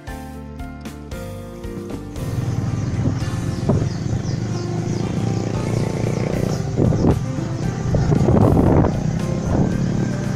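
Background music, then about two seconds in a much louder motorcycle sound takes over: engine and riding noise of a motorbike on a dirt track.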